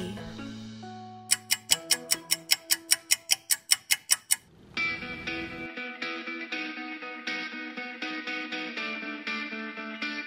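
Countdown-timer sound effect: a rapid run of sharp ticks, about six a second for about three seconds, after a fading held tone. Then background music with plucked notes takes over.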